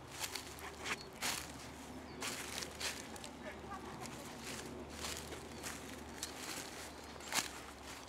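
Footsteps crunching through dry undergrowth and leaf litter, with irregular crackles and snaps. The sharpest snap comes near the end.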